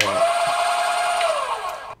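Yang-Chia 480N electric coffee grinder's slow-speed motor with titanium-coated conical burrs switched on and run for about two seconds: a steady whine that starts suddenly and winds down near the end.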